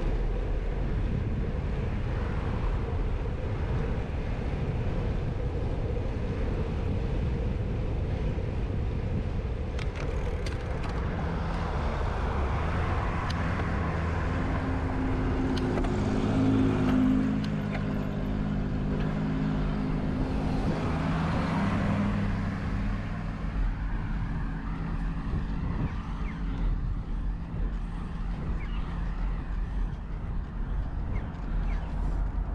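Steady wind rush and road noise on a bicycle-mounted action camera while riding on asphalt. Midway through, a motor vehicle's engine hum rises and fades as it passes.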